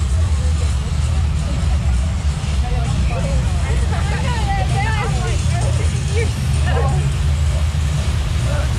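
Steady low rumble of wind and water as the river-rapids raft moves along its channel. Riders' voices chatter and laugh for a few seconds in the middle.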